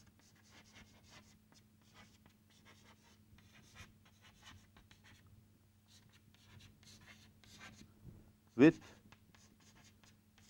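Chalk writing on a blackboard: a run of short, faint scratching strokes as words are written, pausing briefly about five seconds in, over a faint steady low hum.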